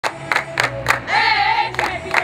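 A group of women clapping their hands in rhythm, about three to four claps a second. A voice sings a line of a chant about halfway through.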